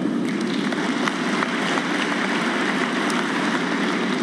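Large audience applauding steadily, a dense even clatter of many hands clapping.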